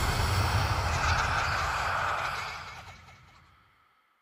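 A deep rumbling drone with a hissing layer over it, holding steady and then fading out over the last second and a half.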